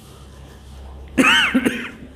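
A man coughing in two quick voiced bursts a little over a second in, over faint room hum.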